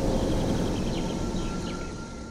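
Outdoor ambience: a steady rush of noise with faint bird chirps, fading out toward the end.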